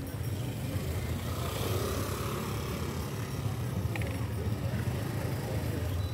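A motor scooter riding past close by, over the chatter of a crowd.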